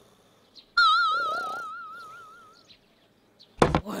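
Cartoon sound effects: a wavering, whistle-like tone starts suddenly about a second in and fades away over about two seconds, over a faint snore from the sleeping hen. A sharp, loud thump follows near the end.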